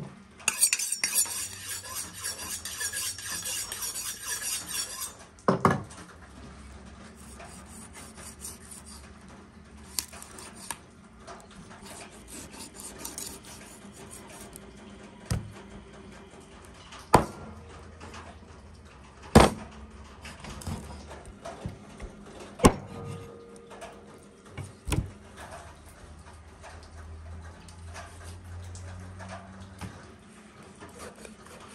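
A raw whole goose handled and cut with a knife on a wooden cutting board. A loud hiss runs for the first five seconds, then soft handling noise with a few sharp knocks on the board, and the knife slicing through the skin near the end.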